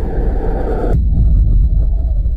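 Loud, deep trailer sound-design rumble with a hiss riding on top; the hiss cuts off abruptly about a second in, leaving the low rumble.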